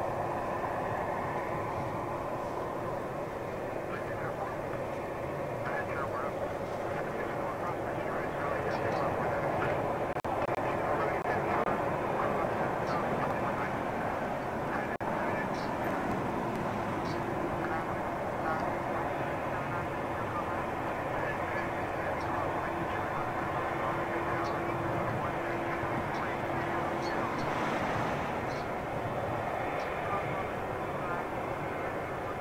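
Boeing 787 Dreamliner's twin turbofan engines running at taxi power as it rolls onto the runway: a steady rumble with a held whine, and a second lower tone that comes in for a while in the second half.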